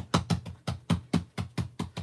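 Hands patting a glued cardstock panel flat on the work surface, a quick even series of taps, about five a second.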